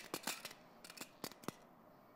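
Steel dressmaking pins clicking as they jump from a cutting mat onto a magnetic pin cushion: a scatter of faint, light metallic clicks over the first second and a half.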